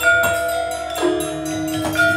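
Balinese gamelan playing: struck bronze metallophones ring on in long held notes, in a sparser stretch with a new stroke about a second in.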